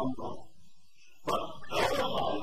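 A man's voice on an old, noisy lecture recording: a brief sound at the start, a short pause, then a sudden loud vocal sound a little over a second in.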